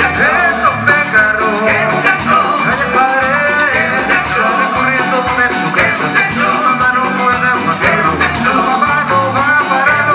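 A live Latin dance band playing loud, steady salsa-style music through a PA: keyboard, electric guitars, congas and a drum kit.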